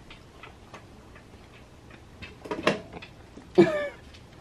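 Faint taps and clicks of a baby's fingers on a plastic high-chair tray, then two short baby vocal sounds: a small one past the middle and a louder one near the end that falls in pitch.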